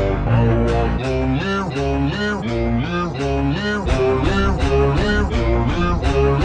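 Rock song with guitar, layered and run through editing effects so its notes swoop up and down in pitch in quick, repeated arcs.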